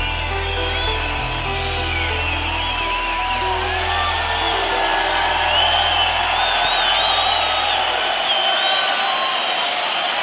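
A rock band's final chords ring out with sustained bass notes that fade away about eight seconds in. From a few seconds in, a live concert audience cheers, whistles and applauds louder and louder.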